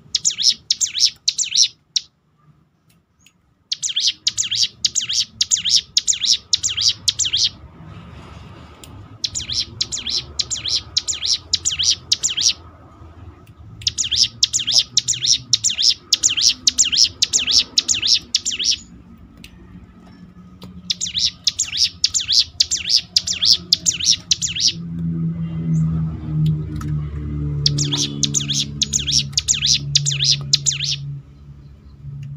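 Ciblek gunung (a prinia) singing in bursts of rapid, high, chattering notes: six bursts of two to four seconds each, with short pauses between them. A low drone sits underneath in the last few seconds.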